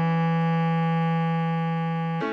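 Bass clarinet holding one steady long note, written F♯4 (sounding E3), the held note at the end of a melody phrase.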